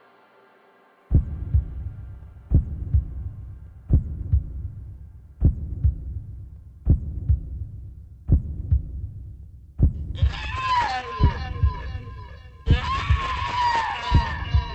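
A slow heartbeat sound effect, a deep double thump about every second and a half, starts about a second in. From about ten seconds in, high wailing with a gliding pitch sounds over the beats.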